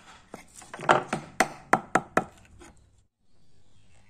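Steel chisel cutting into a small wooden toy wheel: a quick, irregular run of about ten sharp chopping clicks. It stops abruptly about three seconds in.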